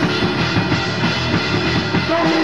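Raw, lo-fi hardcore/metal demo recording: a full band with drum kit playing a loud, dense passage with no vocals.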